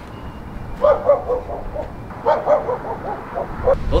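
A dog giving short yips and whines in three brief clusters: about a second in, around two and a half seconds, and again near the end.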